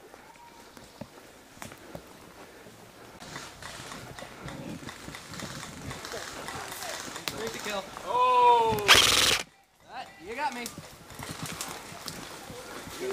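Footsteps and brush rustling as players run along a wooded dirt trail, with scattered sharp clicks. About eight seconds in comes a wordless shout that falls in pitch, right away followed by a loud burst of noise, the loudest thing here, which cuts off suddenly; short voice sounds follow.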